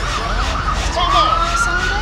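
A siren starts wailing about halfway through, one long tone rising in pitch and then holding steady, with voices behind it.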